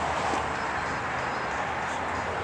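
Steady background noise with a low hum underneath and no distinct events.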